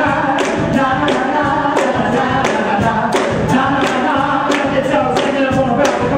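Live soul music: several male singers singing together in harmony with a band, over a steady beat of about two hits a second.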